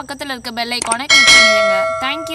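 Notification-bell chime sound effect from a subscribe-button animation, striking about a second in: a bright ring of several steady tones that slowly fades.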